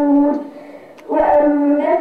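A boy's voice chanting Quran recitation in long, drawn-out melodic notes. He pauses for breath about half a second in and resumes about a second in.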